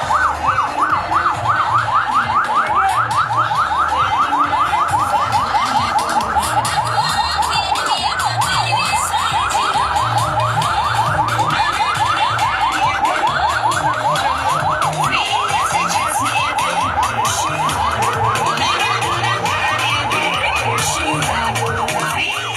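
Vehicle siren on a fast yelp, a rapid rising sweep repeating several times a second without a break, with a low pulsing beat underneath.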